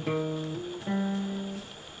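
Acoustic guitar playing a short phrase of single notes high on the neck: a ringing note steps up to a higher pitch without a fresh pick about half a second in, as in a hammer-on, then a new note is picked just under a second in and rings and fades.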